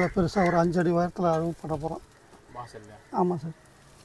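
A man talking in short, quick phrases, with a pause in the middle and another near the end.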